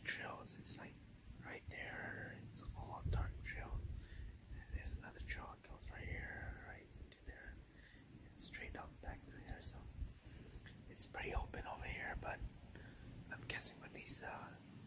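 A person whispering in short hushed phrases, with scattered clicks and low rumbles from a hand-held phone being handled.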